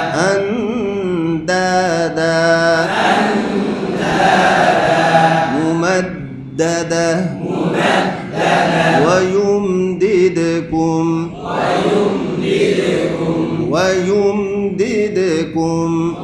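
A man chanting in the drawn-out, melodic style of Quranic recitation, drilling tajweed pronunciation in short phrases.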